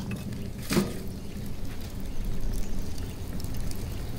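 Wood fire burning in a small stainless-steel camp wood stove with its door open: a steady rush of flames with light scattered crackling as the newly lit kindling catches. One short, sharper sound about a second in.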